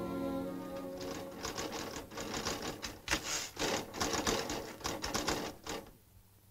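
Typewriter keys struck in quick, uneven runs, starting about a second in as a held orchestral chord fades out, and stopping just before the end.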